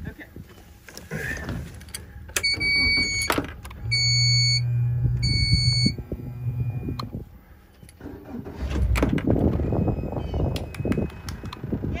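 Pontoon boat's helm warning horn beeping three times as the outboard's controls are worked, with a steady low hum under the second and third beeps, then a rough low rumble setting in about eight and a half seconds in.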